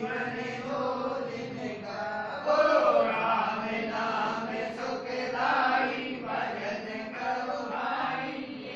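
Voices chanting a Hindu devotional bhajan in kirtan style, a continuous sung chant.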